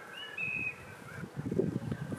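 A small garden bird giving brief high chirps in the first half second or so, followed by a low, muffled sound near the end.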